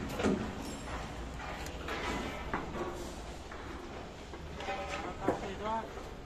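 Indistinct voices of workers talking, with a few light clicks and knocks over a low steady hum.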